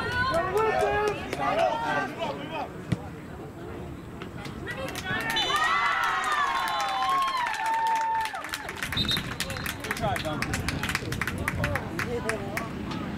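Players and coaches shouting across an outdoor soccer field, the loudest stretch midway with one long drawn-out call. A single sharp knock comes about three seconds in, and a scatter of quick clicks follows near the end.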